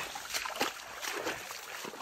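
Water of a small creek trickling, with a few faint knocks of movement about half a second in.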